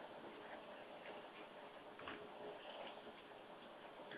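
Near silence: faint room hiss with a few faint, scattered ticks.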